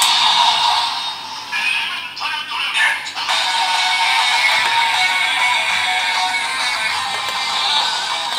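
DX Seiken Swordriver toy belt, loaded with the Primitive Dragon and Elemental Dragon Wonder Ride Books, playing its electronic standby music with a sung chant through its small tinny speaker. There are a few short changes in the sound over the first three seconds, then the loop runs on steadily.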